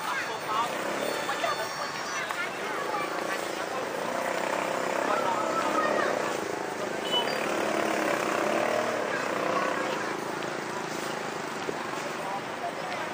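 Busy street ambience: passers-by talking, with an engine drone that grows louder in the middle and then eases off.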